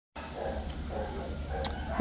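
A dog barking faintly twice in the first second, over the steady low hum of a large floor fan, with a single light click near the end.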